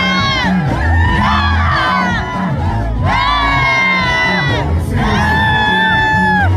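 Live Congolese rumba band music with a stepping bass line, and a crowd close by cheering and shouting along with long held voice notes.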